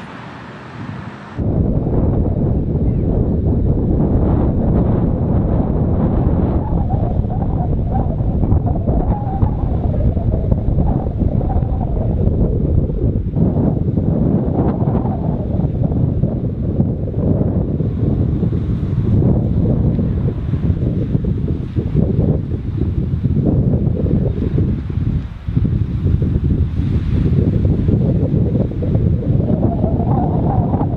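Wind buffeting the microphone: a loud low rumble that starts suddenly about a second and a half in and carries on in gusts, easing briefly near the end.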